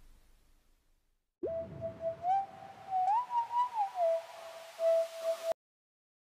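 Whistling, a short tune on a single pure tone: it starts about a second and a half in, steps up in pitch and back down, and cuts off suddenly near the end.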